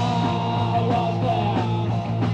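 Punk rock band playing a song live: electric guitar, bass guitar and drum kit, with a bending melodic line wavering above the steady chords and drum hits. Rough recording made on basic equipment.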